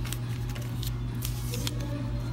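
Paper being handled: a few short, crisp rustles and crackles over a steady low hum.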